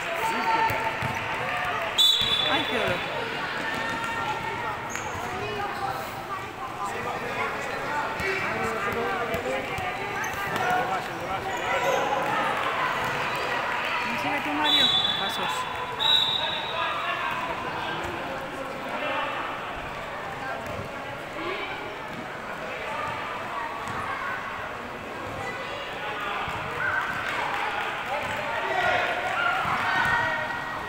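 Youth basketball game in a large hall: a basketball bouncing on the court under a steady hubbub of children's and spectators' voices. Short, sharp whistle blasts about two seconds in and twice around the middle, as play is stopped.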